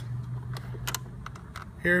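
A series of light plastic clicks and taps as the detachable faceplate of a waterproof motorcycle radio is unclipped and taken off, over a steady low hum.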